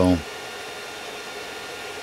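Creality 3D printer running, a steady whir of its cooling fans with a few faint, high, steady tones over it.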